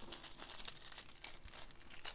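Small clear plastic bags of diamond painting drills crinkling and rustling as they are handled and shuffled, a steady fine crackle.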